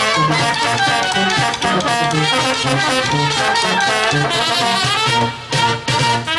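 Youth brass band playing: trumpets, trombones and saxophones over tuba bass notes on a steady beat of about two a second, with bass drum and snare. The sound dips briefly about five and a half seconds in.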